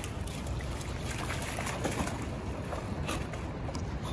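Rough Collie wading out through shallow river water, with soft splashing over a steady rush of wind on the microphone.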